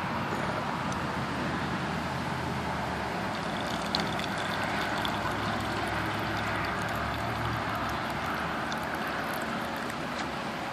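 Vodka poured from a bottle into a plastic cup in the middle seconds, faint against a steady background noise like distant road traffic.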